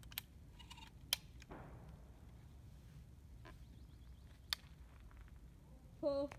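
A few short sharp clicks against a quiet background: a small one at the start, the loudest about a second in and another about four and a half seconds in.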